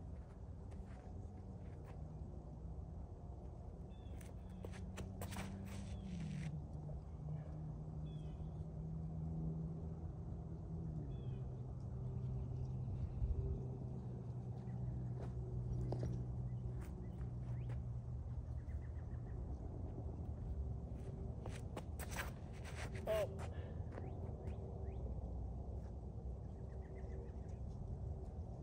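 Outdoor ambience: a steady low hum that drops in pitch twice, with a few clusters of sharp clicks and faint short chirps.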